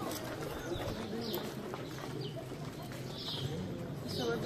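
Birds chirping, short falling chirps about once a second, over a low murmur of voices.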